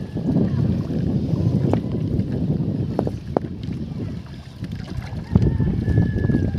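An uneven low rush of wind and water noise on the microphone of a small boat on a lake, with a few sharp knocks.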